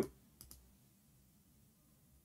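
Two faint, short clicks in quick succession about half a second in, over a low background hum.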